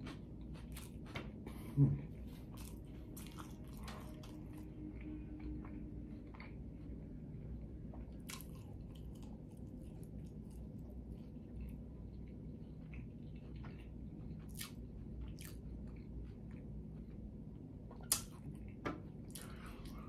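A person chewing food: faint, scattered mouth clicks over a low room hum, with a short hummed 'hmm' about two seconds in.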